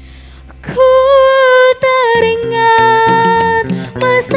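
Live band music: a low bass note rings and fades, then about a second in a female voice comes in with long held sung notes. About two seconds in, bass and guitar start a rhythmic accompaniment under her.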